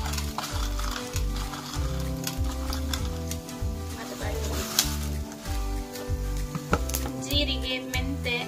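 Background music with a steady beat over food sizzling in a pan, with clicks and scrapes from a spoon stirring it.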